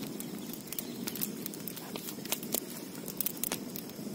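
Open wood fire crackling, with irregular sharp pops and snaps over a steady low noise.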